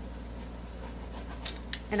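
Steady low background hum in a pause between words, with a couple of short faint clicks or a breath near the end.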